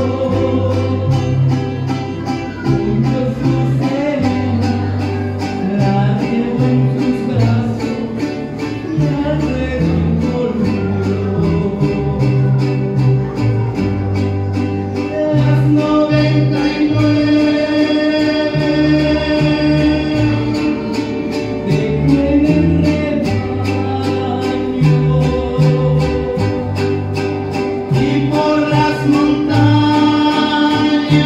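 Live group of singers with strummed acoustic guitars, a violin and a bass line, playing a song with a steady strummed beat.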